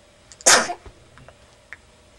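A young baby sneezes once: a single short, sharp burst about half a second in.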